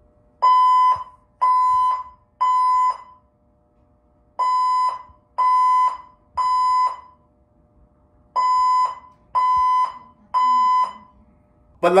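Condo building fire alarm sounding the temporal-three evacuation signal: three steady beeps, a pause, repeated three times.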